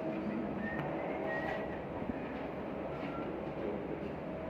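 Steady low rumble and hiss of background noise, with no gunshots.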